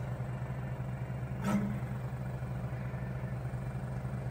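Charmhigh CHM-T48VA pick-and-place machine running with a steady low hum, and one short falling whir about one and a half seconds in as the gantry moves a mount head over the up-looking camera.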